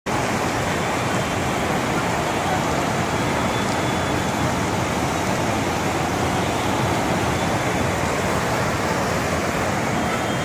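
Floodwater rushing through a street, a steady, unbroken noise of moving water.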